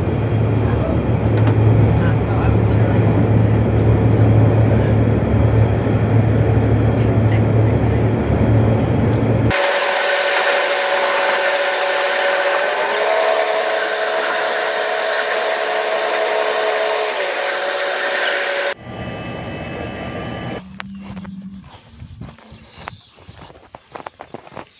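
Passenger train carriage interior while the train is running: a loud steady rumble with a deep hum. After a sudden change about ten seconds in, a high metallic squeal made of several steady tones takes over, shifting up in pitch and later back down. It cuts off before a quiet stretch with scattered small clicks at the end.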